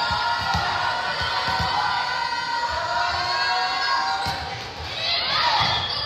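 A volleyball's dull thumps, several at irregular spacing, in a large gym with the chatter and calls of players and spectators behind them. The voices swell into shouting near the end.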